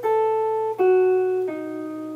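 Archtop electric jazz guitar played clean, stepping down a B7 arpeggio: three single notes, each lower than the last, about three-quarters of a second apart, the last one left ringing.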